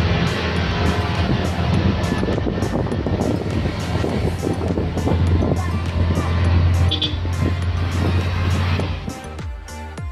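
Steady road and engine noise of a moving vehicle, a low drone with rushing noise, with background music with a steady beat playing over it. About nine seconds in the vehicle noise drops away, leaving only the music.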